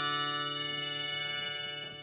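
Harmonica and acoustic guitar sustaining the final chord of a folk love song. The chord gets quieter and thins out near the end as it dies away.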